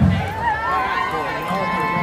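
A raised voice in a parade crowd wavering up and down in pitch, over a low rumble of crowd and band noise.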